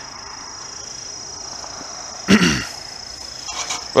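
Steady high-pitched chirring of insects in the grass, with one short, loud call that slides down in pitch about two and a half seconds in.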